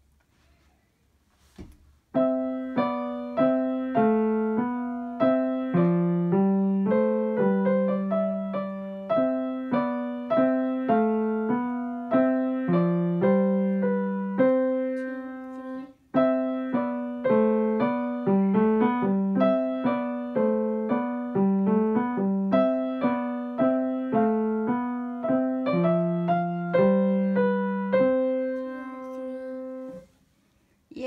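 A grand piano playing a simple beginner's minuet, melody and bass line in both hands, played by a young child. The playing starts about two seconds in, breaks off for a moment about halfway through, and stops at the end.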